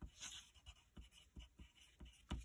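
Wooden graphite pencil writing a word on paper: faint, short scratches of the lead, several in a row.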